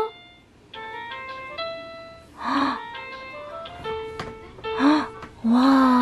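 Electronic toy piano keys on a baby activity toy being pressed one at a time, each key sounding a single synthesized note of about half a second at a different pitch. Short voice sounds come between the notes, and a longer one near the end.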